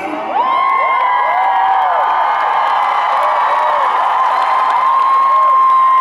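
Concert audience cheering and applauding, with many high-pitched screams and whoops overlapping. Near the end there is one long, steady high scream.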